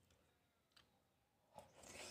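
Near silence, with two faint clicks, one about three quarters of a second in and one near the end.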